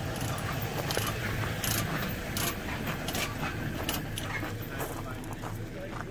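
Scattered metallic clinks and clicks from tie-down chains being handled on a flatbed trailer, about one every second or less, over a low steady rumble.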